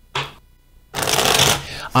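A deck of cards shuffled by hand: a short riffle of cards just after the start, then a longer run of shuffling lasting about a second.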